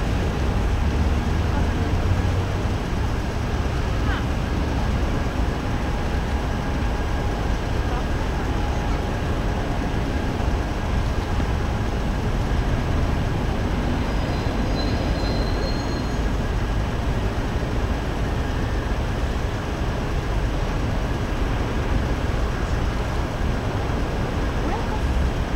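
Steady rumble of city traffic with a deep low hum and no distinct events; a faint short high squeal sounds about midway.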